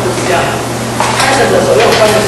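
A man's lecturing voice over a steady low electrical hum.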